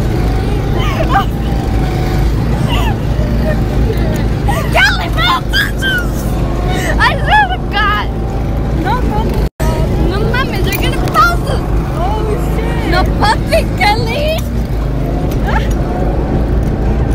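Go-kart motor running with a constant low rumble and wind noise while the kart is moving, with excited voices calling out and squealing over it. The sound cuts out briefly about nine and a half seconds in.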